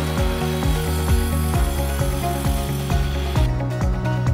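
Evolution mitre saw cutting through a timber stud, its hiss stopping about three and a half seconds in. Background music with a steady beat plays throughout, louder than the saw.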